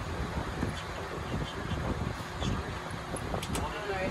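Two dogs, a border collie and a pit bull puppy, play-fighting, with low rumbling growls and scuffling mouthing noises; a few light clicks come near the end.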